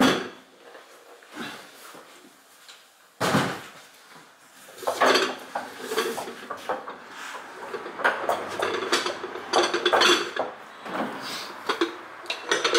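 Handling noises from a cool box and its black motor unit: a knock at the start and another about three seconds in, then a run of clattering, clinks and knocks of hard plastic and metal as the unit is lifted out and turned over.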